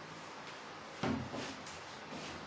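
A whiteboard eraser knocks against the board about a second in, followed by a couple of quick rubbing strokes as the board is wiped.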